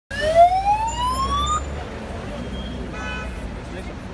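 Ambulance siren wailing upward in pitch, then cutting off sharply after about a second and a half, over the low rumble of traffic. A brief steady tone sounds about three seconds in.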